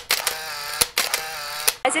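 Camera shutter clicks: three sharp clicks a little under a second apart, over a steady buzzing hum.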